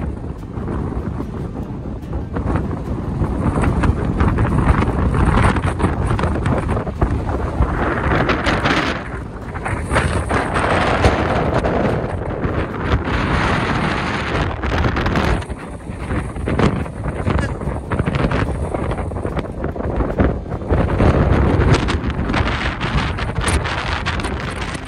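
Wind buffeting the microphone: a loud, gusting rumble that swells and drops throughout.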